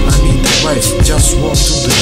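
Hip hop track: a man rapping over a beat with heavy bass and regular drum hits.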